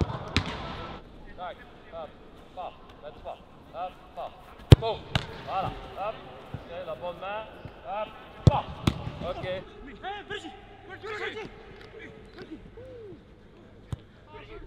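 Footballs being struck on a grass pitch in an empty stadium: a sharp kick about half a second in, another near the middle, and two in quick succession about two-thirds through. Between them come many short, wordless shouts and calls from players.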